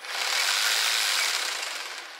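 EGO battery-powered hedge trimmer attachment triggered and run briefly, its cutter blades chattering and clicking a bit, coming up at once and winding down near the end. The clicking is what it sounds like when it starts needing a little bit of oil.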